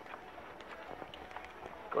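Faint footsteps and rustling handling noise from a phone carried by someone walking, over quiet indoor room noise.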